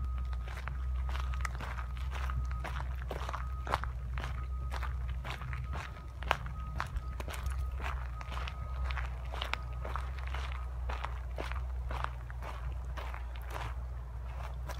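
Footsteps on a dirt forest path strewn with pine needles, at a steady walking pace of about two steps a second.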